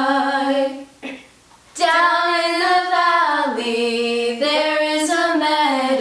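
Girls' voices singing a camp song a cappella in unison. A held note ends the line, there is a short breath pause of about a second, then the singing picks up again with the next verse.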